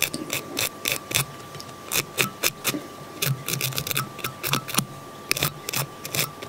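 Velcro dubbing brush scratching in quick repeated strokes, about four a second, over the dubbed body of a Czech nymph fly in the vise, picking out the dubbing fibres so they hang down for a buggy, realistic look.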